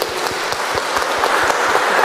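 Congregation applauding, the clapping building steadily louder.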